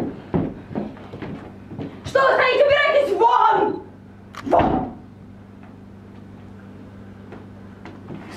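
Footsteps of heeled shoes crossing a stage floor, then a loud raised voice for about two seconds and a shorter vocal outburst a second later. After that it drops to quiet with a steady low hum.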